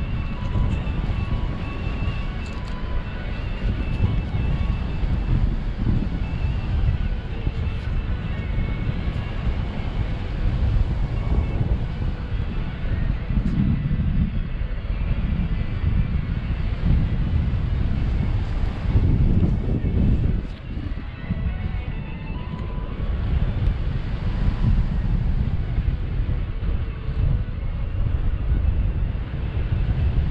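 Airflow buffeting the microphone of a paraglider pilot's camera in flight, a continuous low rumble that swells and eases.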